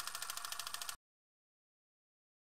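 Film projector clatter: a rapid, even run of about fifteen clicks a second over a hiss. It lasts about a second and cuts off suddenly.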